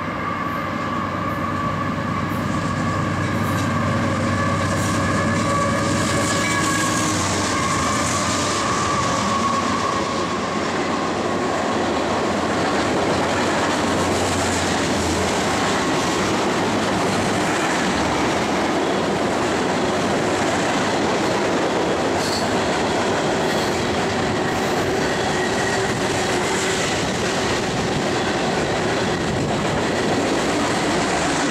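Canadian Pacific freight train passing at speed. For about the first ten seconds a steady chord of tones rides over the locomotive's noise, then fades, leaving the loud, continuous clatter of hopper and tank car wheels over the rail joints.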